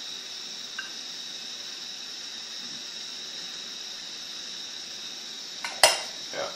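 A steady faint hiss, then near the end a sharp glass clink as the glass petri dish lid is set down on the streaked agar plate.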